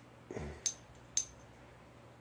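A soft bump, then two light metallic clinks about half a second apart as the small metal chainsaw flywheel is handled.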